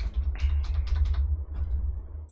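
Computer keyboard being typed on in a quick run of key clicks as a password is entered, over a steady low hum.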